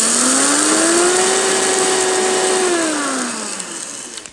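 Personal blender motor running with a press-down grinding cup, regrinding coarse black peppercorn pieces into a finer, even grind. The motor whine rises in pitch over the first second, holds steady, then falls and winds down from about three seconds in.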